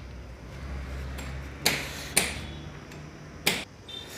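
Three sharp metallic knocks, the last near the end, over a low steady hum that fades about halfway through.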